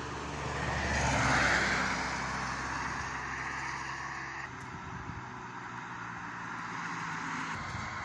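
A car passing on a highway, its tyre and engine noise swelling to a peak about a second and a half in and then fading back to a steady low traffic hum.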